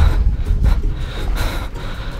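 Low rumble of wind and handling noise on the microphone of a camera carried on foot.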